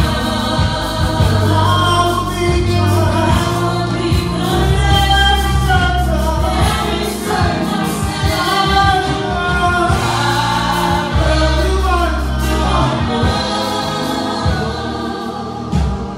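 Live gospel worship song: a male lead singer with backing singers, over a band with a steady bass line and drums.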